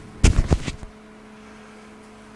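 A quick cluster of three or four sharp thumps in the first second, the loudest sound here, followed by a faint steady electrical hum.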